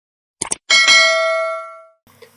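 A quick double click, then a bright bell chime that rings and fades out over about a second: the sound effect of a subscribe-button and notification-bell animation.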